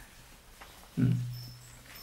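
A man's low, hummed "hmm" about a second in, fading away, over quiet room tone, with a couple of faint, short high-pitched tones near the end.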